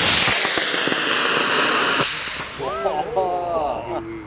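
Model rocket motor burning at liftoff: a loud hiss with falling tones as the rocket climbs away, stopping suddenly about two seconds in as the motor burns out. Excited voices of onlookers follow.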